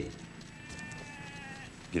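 A sheep bleating faintly, one long drawn-out call in the middle, followed near the end by a man's loud call to the stock.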